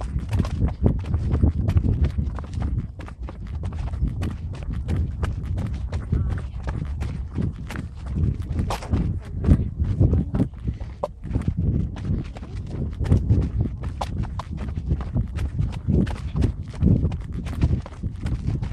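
Quick, irregular footfalls of runners hurrying down steep railway-tie steps, knocking one after another, over a constant low rumble from the running camera.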